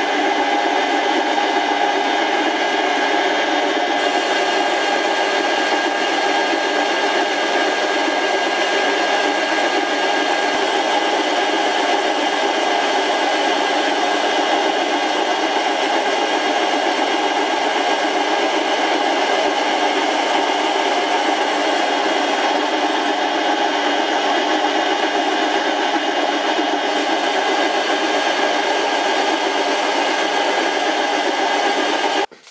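Small metal lathe running under power while a turning tool cuts a steel Morse-taper blank: a steady whine from the motor and gear drive over the hiss of the cut. The highest part of the hiss fades briefly near the start and again about three-quarters of the way through.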